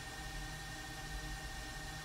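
Faint steady background hum and hiss, with a thin steady high tone running through it; nothing else happens.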